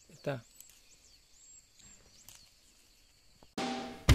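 Quiet outdoor ambience with faint high chirping and one short spoken word about a third of a second in. Near the end, a sudden burst of hiss that fades.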